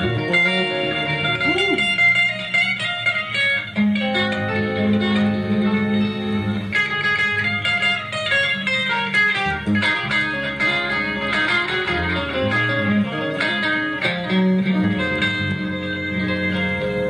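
Electric guitar soloing in fast runs of notes over bass guitar, played live in a jam.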